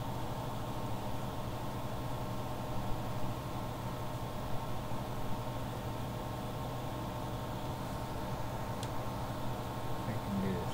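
Steady low hum with a faint constant tone over a noise bed, like a fan or appliance running in a small room, with one faint click near the end.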